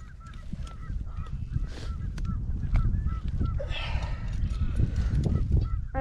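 Geese honking over and over in a rapid, chattering series, thinning out after about three seconds, with a low steady rumble on the microphone and a brief rustle near the middle.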